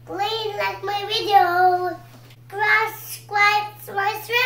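A young child singing, several held notes with short breaks between them, over a faint steady low hum.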